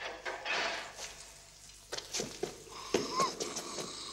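A man's faint voice in short fragments, with a brief breathy hiss about half a second in and a few light knocks.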